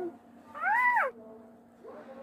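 A baby macaque gives one short, high call about half a second in, rising then falling in pitch.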